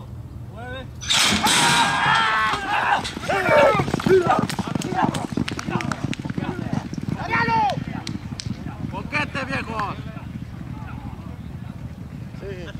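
Starting gates opening with a sudden loud clatter about a second in as two racehorses break, then people yelling and shouting the horses on, the shouts dying down toward the end.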